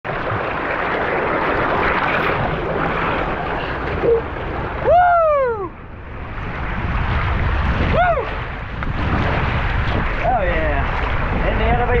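A steady rush of sliding water and air noise from a ride down a water-park body slide, broken by four short whoops from the rider that rise and fall in pitch, the loudest about five seconds in and the last near the end.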